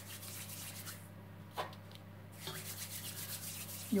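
Fingertips rubbing and spreading flour over a ceramic plate: a dry, scratchy rubbing in two spells, through the first second and again from about halfway to the end, with a short tick in between.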